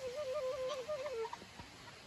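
Background music: a solo flute melody moving in quick small steps, which breaks off about a second and a half in.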